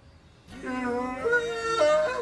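A song with a sung vocal, plausibly playing from the laptop held overhead: after a brief quiet it starts about half a second in, with long held notes that slide from one pitch to the next.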